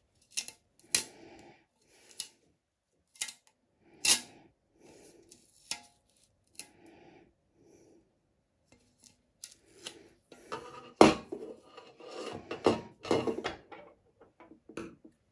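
Handling sounds of double-sided tape being applied to a metal tin: scattered sharp clicks and taps, then a denser run of rubbing and tearing in the last few seconds.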